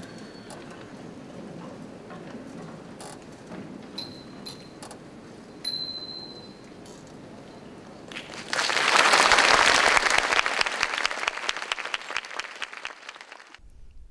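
Audience applause in a concert hall, breaking out about eight and a half seconds in after a quiet stretch of room noise, loud at first and dying away over about five seconds.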